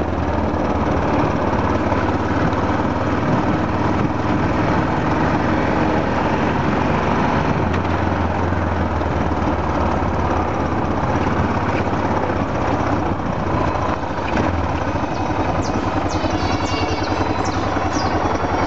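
Small motorcycle engine running steadily under way, with road noise.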